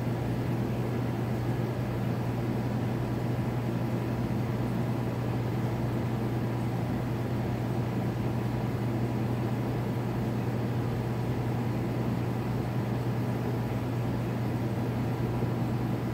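A steady low machine hum over an even background noise, unchanging throughout.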